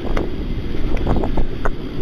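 Wind and clothing rustle on a body-worn police camera's microphone: a steady low rumble and hiss, broken by several short scrapes and knocks as the officer moves.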